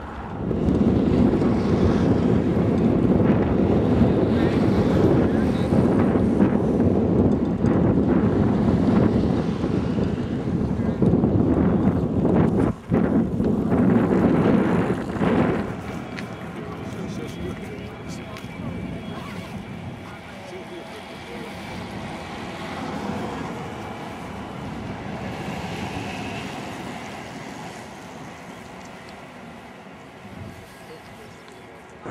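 Wind buffeting the camera microphone: a loud, steady low rumble that drops to a quieter hiss about halfway through.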